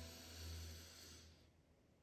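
A person taking a slow, faint deep breath in, fading out about a second and a half in, then near silence.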